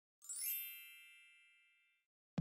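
A bright chime sound effect: a quick sparkly shimmer, then a bell-like ding of several ringing tones that fades away over about a second and a half.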